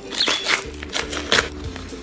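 Brown kraft-paper mailer being torn and rustled open by hand, with several sharp crinkles, the loudest about half a second and a second and a half in, over steady background music.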